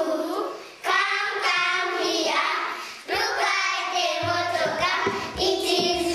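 A group of young children singing a simple children's song together, in short phrases with brief breaks between them.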